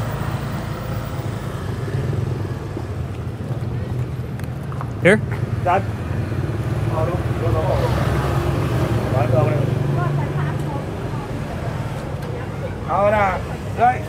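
Tuk-tuk engine running with a steady low hum, with scattered street voices over it.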